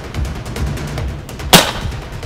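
A single sharp shot from a tranquilliser dart rifle about one and a half seconds in, sending a sedative dart into the animal. Background music with a steady beat runs throughout.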